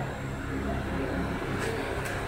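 Steady low mechanical hum with a faint, even drone, like a motor or engine running in the background.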